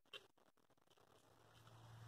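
Near silence: room tone, with one faint click just after the start and a faint low hum coming in near the end.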